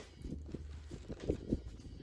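Faint light taps and clicks of a small plastic toy figure and toy stroller being moved about on a wooden bench, over a low steady rumble.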